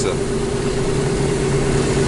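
Steady road and engine noise inside a moving Toyota car's cabin at highway speed, an even rushing drone with a constant low hum.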